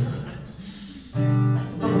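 Acoustic guitar coming in about a second in with a strummed chord that rings on, starting the song's accompaniment after a short lull.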